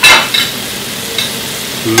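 Shrimp and diced peppers sizzling steadily in a hot frying pan, with a sharp clink or two right at the start.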